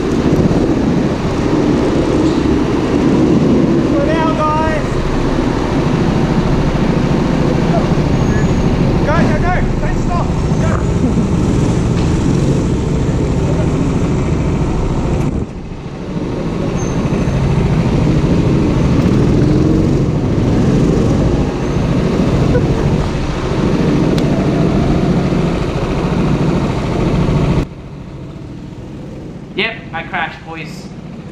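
Go-kart engine running hard with tyre noise from the driver's seat, the level dipping briefly midway. Near the end the sound drops suddenly to a low steady level as the kart comes to a stop after spinning out.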